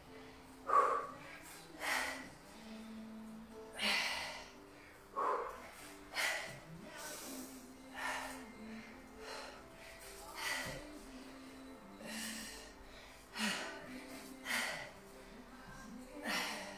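A woman breathing hard with exertion during repeated barbell lifts: short, sharp breaths about once a second, the loudest about a second in. Faint background music underneath.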